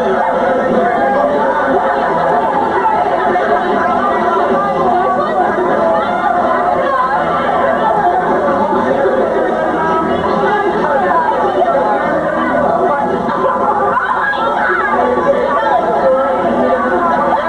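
Many voices chattering over one another in a crowded restaurant dining room, a steady, loud babble with no single voice standing out.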